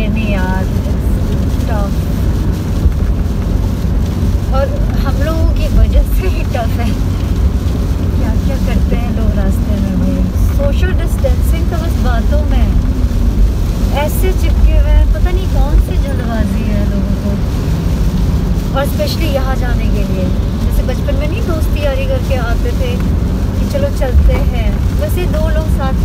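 Steady low rumble of a moving car heard from inside the cabin, with a woman's voice over it, sounding without clear words.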